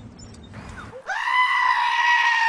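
A goat screaming: one long, loud bleat that starts about a second in, holds steady, then falls in pitch as it ends.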